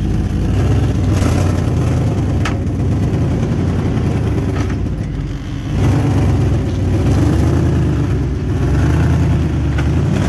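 Dodge Ram 1500 pickup's engine running as the truck drives slowly, a steady low rumble. It drops off briefly around the middle, then picks up again.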